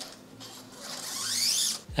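A steel rear-shock lockout inner cable being drawn out through its housing: a scraping, zip-like sound that rises in pitch and grows louder over about a second in the second half. The cable has a bend in it and does not run smoothly.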